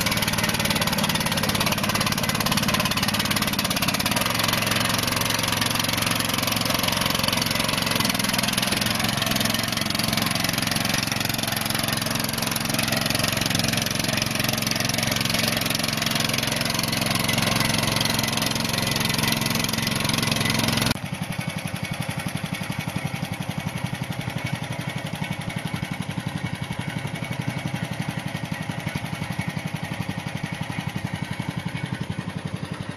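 Engine of the LifeTrac II, an open-source hydraulic-drive tractor, running steadily as it is driven. About two-thirds of the way through the sound drops suddenly to a quieter, even engine note with a fast regular pulse.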